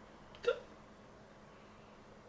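A single short vocal sound from a person about half a second in, against faint room tone.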